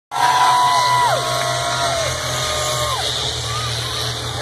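Grandstand crowd cheering, with several long whoops that hold their pitch and then drop away, over a steady low rumble of the racing school buses' engines.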